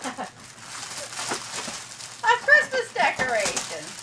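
Gift wrapping paper crinkling and tearing as a boxed present is unwrapped, with a person's voice breaking in from about two seconds in, louder than the paper.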